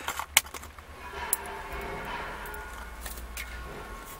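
Plastic blister pack being handled and opened, and the thin wire radio removal keys inside clinking as they come out, with a few sharp clicks.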